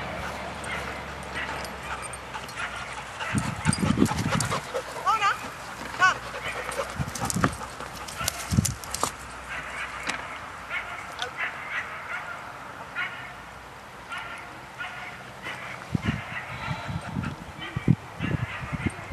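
Puppies yipping and giving short barks at intervals while playing in a group, some calls sliding quickly in pitch.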